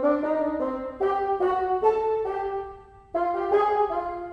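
Sampled orchestral wind instrument from the Iconica Sketch library in HALion Sonic, played from a keyboard as a sequence of held chords that change about every half second, with a brief break near the end.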